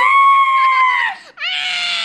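Two high-pitched screams in play: a long clear one lasting just over a second, then after a short break a raspier one, the second from a young child.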